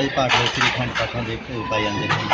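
A man speaking, with light clinking in the background.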